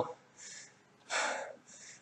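A man breathing hard between phrases, winded from an all-out interval on an elliptical trainer: a short faint breath about half a second in, a louder breath about a second in, and another faint one near the end.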